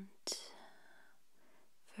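A short, sharp mouth and breath sound from the whispering voice about a quarter second in, a faint soft breath after it, then quiet room tone.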